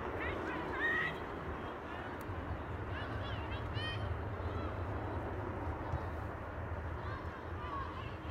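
Distant shouts and calls from rugby players and spectators, with a steady low rumble underneath.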